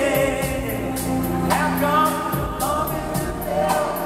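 Male lead vocalist singing a soulful ballad live, with band accompaniment and a steady light beat.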